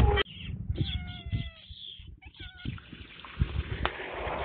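A cat meowing: one drawn-out call about a second in, slightly falling in pitch, then a shorter one, with sharp knocks at the start and near the end.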